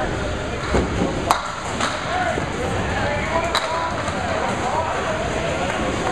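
Busy candlepin bowling alley: a steady hubbub of indistinct voices, broken by two sharp clacks of balls and pins on the lanes, about a second in and again about three and a half seconds in.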